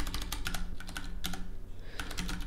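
Computer keyboard typing: a rapid, irregular run of keystroke clicks as short repeated key presses are made to move through and copy lines of code.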